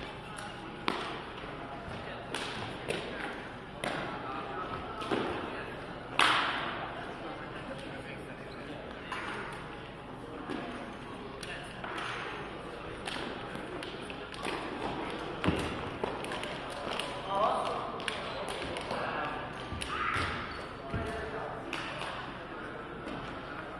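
Shuttlecock kicked back and forth in a rally: sharp short taps and thuds of feet striking the shuttlecock and landing on the court floor, echoing in a large sports hall, over background voices.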